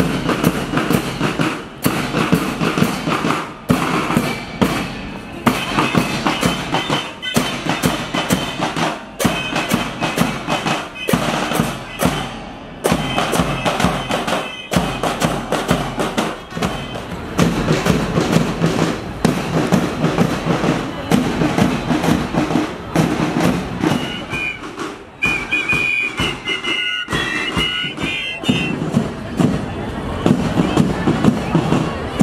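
A marching flute-and-drum band playing: bass and snare drums keep a steady beat, with a high flute melody coming through at times, most plainly early on and again near the end.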